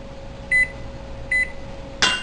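Electric range touchpad beeping as its heat setting is raised: two short, identical high beeps about a second apart, over a steady hum.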